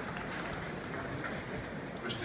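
Outdoor stadium ambience: a steady background murmur of distant spectators' voices.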